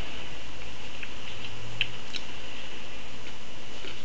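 Steady background hiss with a low hum, broken by a few faint clicks about one and two seconds in.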